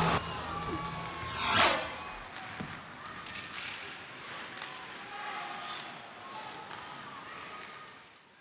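An edited whoosh transition sound about a second and a half in, then steady arena crowd noise with faint music in the background.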